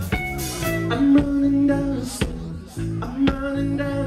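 A live band playing a song: sustained bowed violin and keyboard notes over a drum beat, with a sharp drum hit about once a second.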